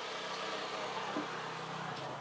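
A steady rushing noise with a low mechanical hum under it, easing off right at the end.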